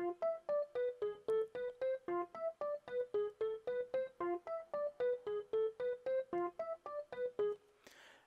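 A single-line melody played back on a software piano-like keyboard instrument: short single notes at an even pace of about four a second, rising and falling in small steps and stopping shortly before the end.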